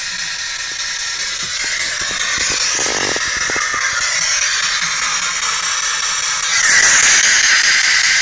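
Ghost box radio sweeping through stations, giving a steady hiss of static with faint broken fragments of broadcast sound. The static grows louder near the end, and a few soft handling knocks come about three seconds in.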